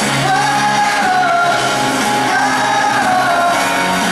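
Pop-rock band playing live in a large arena, the lead vocal holding long notes that slide slowly up and down over the band. Recorded from among the audience, so the sound is full of hall reverberation.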